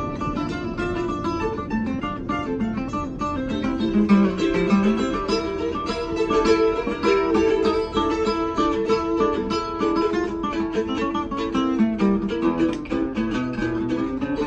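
Instrumental passage of an acoustic guitar and a mandolin played together: the guitar strums the chords while the mandolin picks quick runs of notes over it.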